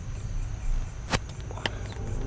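Two sharp clicks about half a second apart, over a steady background of crickets chirping and a low rumble.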